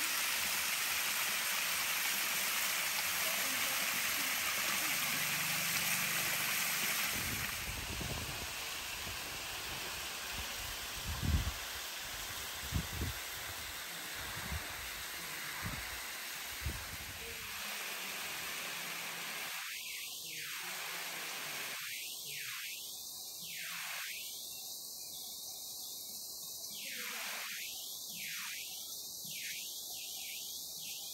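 Waterfall water pouring over rock, a steady rushing hiss, with a few low bumps on the microphone in the middle. In the second half the rushing grows thinner and dips in and out.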